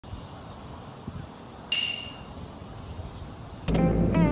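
A steady high hiss. About halfway through, a short bright ringing note sounds and fades. Music with a low bass note starts just before the end.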